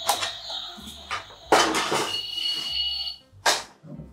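Battery-powered toy doll's cooker, switched on, playing its electronic sound effect: high steady beeping tones over a hiss, cutting off about three seconds in, followed by a short knock.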